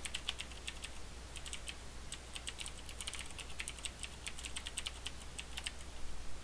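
Typing on a computer keyboard: quick, irregular keystrokes with short pauses between runs, over a faint steady low hum.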